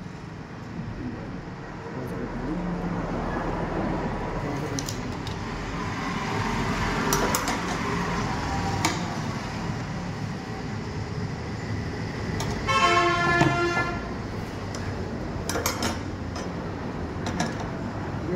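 Background traffic noise with a vehicle horn sounding once for about a second, a little past the middle, the loudest sound here. A few short metal clinks come from steel rebar being handled and bent on a steel bending plate with a hand lever.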